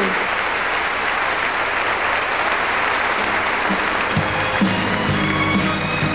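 Concert hall audience applauding after a song. About four seconds in, the band and orchestra start the next number under the applause, with a steady beat of about two strokes a second.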